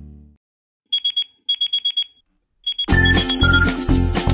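An electronic alarm clock beeping: rapid high-pitched beeps in two quick bursts, then two more. Upbeat music starts about three seconds in.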